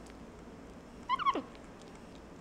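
Black-capped capuchin monkey giving one short, high squeak about a second in, dropping steeply in pitch at its end.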